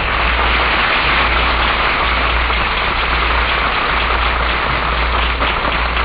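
Studio audience applauding steadily, heard on an old radio broadcast recording with the treble cut off.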